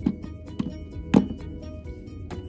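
Background music with plastic toys knocking as they are handled: a sharp knock at the start and a louder one about a second in, with a few lighter taps.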